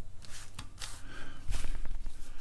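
Kaypro 1 floppy drive A running just after power-on, with a few scattered clicks from the drive and a low rumble in the last half second.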